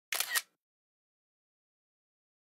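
iPad screenshot shutter sound: a brief camera-shutter click in two quick parts, over in under half a second.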